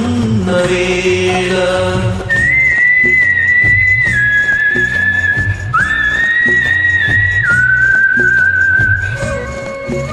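Instrumental interlude of a karaoke backing track for a Malayalam film song. About two seconds in, a high, clear, whistle-like melody enters and slides between held notes until near the end, over a steady bass line and rhythmic percussion.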